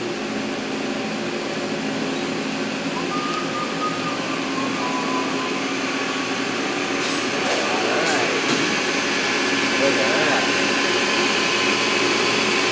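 Steady hum and whir of CNC milling machines running on a machine-shop floor, growing slowly louder toward the end as a vertical machining center cuts titanium.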